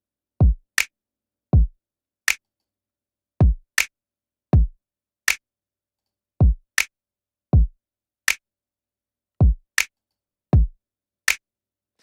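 A programmed drum beat with nothing else playing: deep kicks whose pitch drops sharply, a short extra kick after the first, and a bright, snappy snare, in a pattern that repeats every three seconds. It runs through the UAD Distressor compressor plugin on an aggressive setting, blended in parallel, which adds a little distortion and lengthens the snap of the kick and snare.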